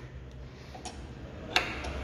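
A few light metallic clicks and taps as a motorcycle steering damper and its mount are handled and set onto the top triple clamp, the sharpest one about one and a half seconds in, over a faint steady low hum.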